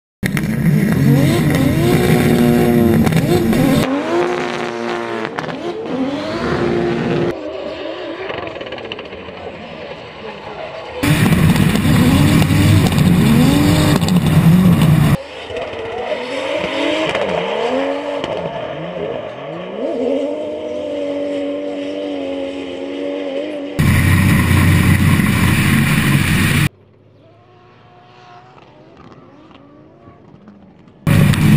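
JZ straight-six engines of two drift cars, a BMW E46 M3 among them, revving hard through a tandem drift, the pitch climbing and falling with each throttle blip, with tyre noise. The sound jumps abruptly between loud and quieter stretches several times and drops much quieter near the end.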